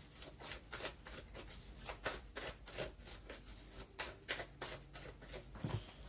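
A deck of tarot cards being shuffled by hand: a quick, irregular run of soft card clicks and flicks, over a faint low hum.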